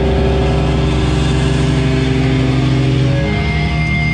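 Live hardcore band's distorted electric guitars and bass holding one sustained chord that rings out without drums. A thin, high feedback whine comes in near the end.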